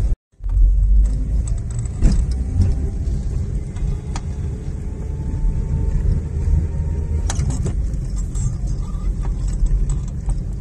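Car driving slowly, heard from inside the cabin: a steady low rumble of engine and road noise, with a few faint clicks and rattles. The sound drops out completely for a moment just after the start.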